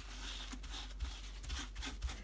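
Faint, soft rubbing of dry kitchen towel wiped across a stencil, taking leftover ink off it.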